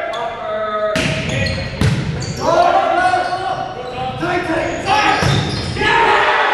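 A volleyball being hit during a rally in a gym: sharp slaps of the ball about a second in and again just under two seconds in, with players' shouted calls between them, and another hit near the end.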